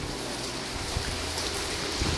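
Rain falling steadily, an even hiss.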